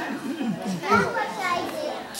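Several children talking and calling out at once: overlapping chatter, with no singing or backing music.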